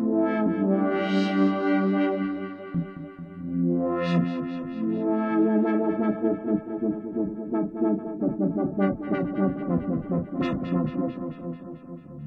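Pioneer Toraiz AS-1 monophonic analog synthesizer playing a custom patch from its touch keyboard, its filter cutoff swept open and closed so the tone brightens and dulls. A quicker run of short notes follows in the second half.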